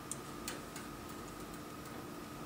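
A couple of sharp clicks and a few lighter ticks as the plastic flying lead guide tube is fed by hand into the flying lead hole on the chromatography instrument, over a steady background hum.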